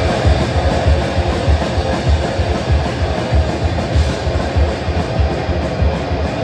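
A heavy metal band playing live at full volume: distorted electric guitars and bass over a fast, driving drum beat, the kick drum pounding about four to five times a second.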